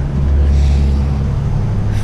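Steady low drone of a long-range fishing boat's diesel engines heard inside the wheelhouse, the hum shifting slightly in pitch about one and a half seconds in.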